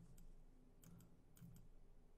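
Near silence: room tone with a few faint clicks at the computer, two of them close together about a second in.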